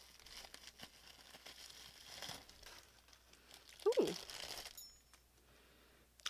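Plastic bubble wrap crinkling softly with scattered small crackles as hands unwrap a small heavy item from it.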